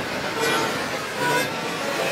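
Road traffic noise: a steady wash of vehicle sound.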